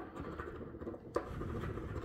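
A metal scratcher coin scraping the coating off a scratch-off lottery ticket on a hard table, in two strokes, the second starting about a second in.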